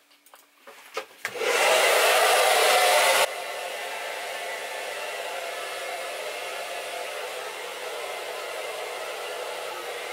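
Handheld hair dryer switched on about a second in, blowing on wet hair. It runs loud for about two seconds, then drops suddenly to a lower, steady level. A few light handling clicks come before it starts.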